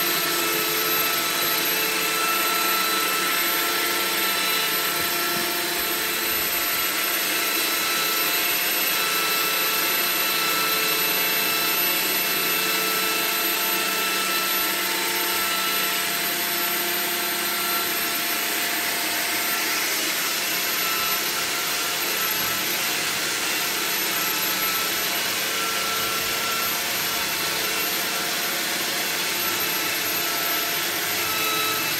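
Handheld electric drill spinning a drum-fed drain-cleaning cable, running steadily with a few held motor tones as the cable works through a clogged kitchen sink drain.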